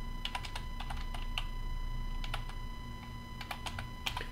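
Typing on a computer keyboard: an irregular run of key clicks as a word is typed, thinning out near the end.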